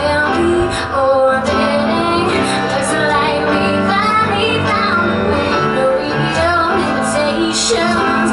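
A woman singing a pop ballad live, holding long notes, over strummed acoustic guitar.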